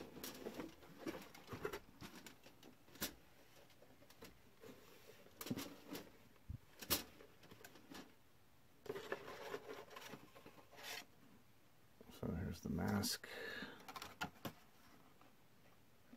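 A cardboard costume box being opened by hand, with its cellophane window and the plastic mask inside crinkling and rustling through scattered short clicks and scrapes.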